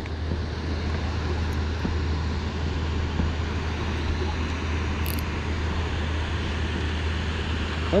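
Steady rushing roar of water pouring through a dam's spillway gates, with a constant low hum underneath.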